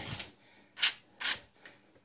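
Two short hisses from an aerosol can of anticorrosion spray (Movil) squirted through a thin red extension straw, about a second apart.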